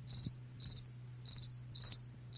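Cricket chirping: short high trills, each of a few quick pulses, repeating about twice a second over a faint low hum.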